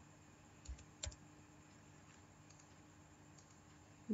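Near silence with a low steady hum, broken by two faint clicks about a second in and a few fainter ticks later, from a computer keyboard and mouse as a value is typed into a field.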